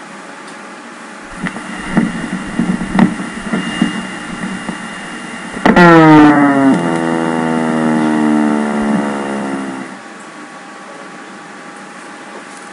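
EMG loudspeaker sound of a neuromyotonic discharge: a high-pitched whine that starts suddenly about halfway in, then falls in pitch and fades over about four seconds. This is the 'pinging' sound of a very high-frequency discharge with decrementing amplitude and frequency. Before it come a few seconds of irregular sharp pops.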